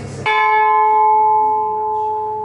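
Ship's bell struck once with its clapper about a quarter second in, then ringing on with a clear, steady tone that slowly fades.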